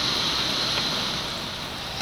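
Shallow seawater washing over beach pebbles at the water's edge, a steady rush that fades a little toward the end.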